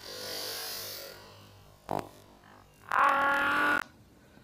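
Short synthesized sound effects: a hissing whoosh in the first second, a single click about two seconds in, then a steady held synth chord lasting under a second near the end.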